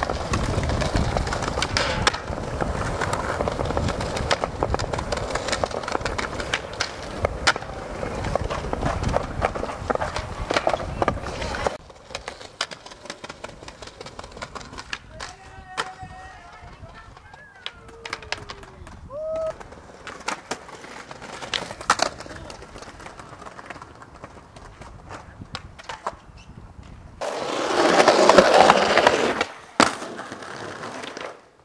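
Skateboard wheels rolling over tiled plaza paving, loud and continuous for about the first twelve seconds. After that comes a quieter stretch with scattered sharp clacks of the board. Near the end there is a short, loud spell of rolling.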